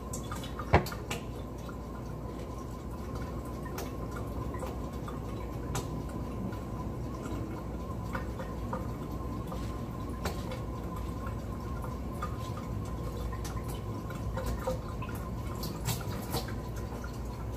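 Steady background hiss with a few light clicks and taps from hands breaking a banana and placing the pieces on a plate; one sharp click about a second in is the loudest.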